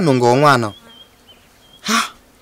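A man speaking briefly, then a pause. Through the pause a faint high thin tone comes and goes, and a short sharp intake of breath comes near the end.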